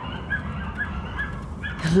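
Pet meerkat giving a string of short, high chirps, about two or three a second, as it forages in the grass: a meerkat's contact calling.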